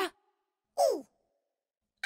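Two short vocal sounds from cartoon characters, each falling in pitch like a sighed "oh". The first comes at the very start and the second just under a second in, with silence after.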